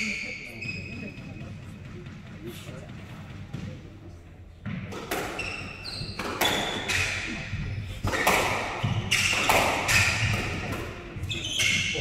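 Squash rally in a walled court: the ball is struck by rackets and cracks off the walls, with shoes squeaking on the wooden floor. The hits come thick and fast from about five seconds in.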